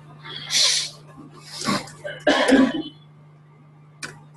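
A person coughing three times in quick succession, each cough a short loud burst.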